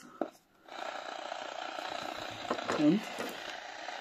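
Selga-404 portable AM transistor radio coming on as its 9 V battery is connected: a steady hiss of static from its small loudspeaker starts under a second in and keeps on, showing the set has power and is receiving.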